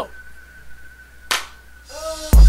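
A single sharp snap a little over a second in, over a faint steady high-pitched whine.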